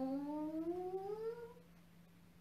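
A woman's drawn-out vocal tone from a qigong breathing exercise, held steady, then gliding upward in pitch and fading out about one and a half seconds in.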